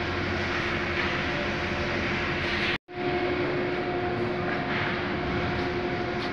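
Steady factory machinery noise: a continuous rumble and hiss with a constant hum, broken by a very short gap about three seconds in.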